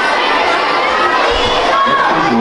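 A crowd of children shouting and cheering together, a steady loud din of many overlapping voices.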